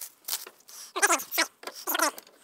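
Handling a plastic reel of radial wire with cellophane wrapping: irregular crinkling and crackling, with a few short squeaks about halfway through as the reel is worked onto a screwdriver shaft.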